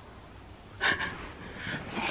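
A woman's short, sharp breath about a second in, followed by lighter breathing that builds towards the end.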